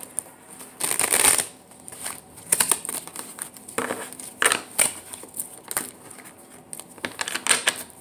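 A deck of tarot cards shuffled by hand: irregular snaps and taps of the cards, the loudest a longer riffle about a second in.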